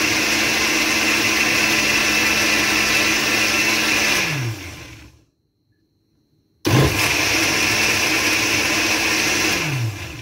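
Stainless-steel countertop blender running steadily as it blends a creamy mushroom liquid. Its motor winds down to a stop a little past four seconds in, starts again abruptly about two seconds later, and winds down again near the end.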